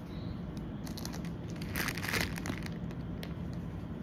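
A small plastic sachet crinkling as it is handled and snipped open with scissors, with scattered light clicks and a louder burst of crinkling about two seconds in.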